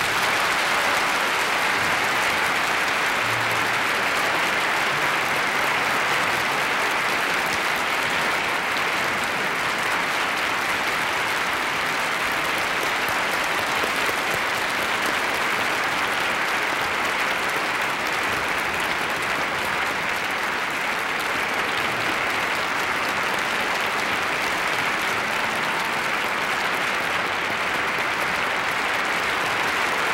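Large concert-hall audience, many of them children, applauding steadily without a break at the end of an orchestral performance.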